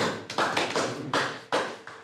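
A small group clapping their hands in a short round of applause, quick uneven claps that fade out near the end.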